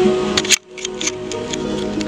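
Music playing through a homemade transistor power amplifier with Sanken output transistors into a speaker during a sound check. About half a second in, a few sharp clicks and a brief dropout break the music, followed by more scattered clicks as the music carries on.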